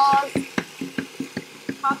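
A voice trails off, then comes a run of quick, light clicks, about four or five a second and unevenly spaced, with a brief spoken word at the very end.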